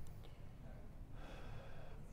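A person's breathy exhalation close to the microphone, starting about halfway through, over a low steady room hum.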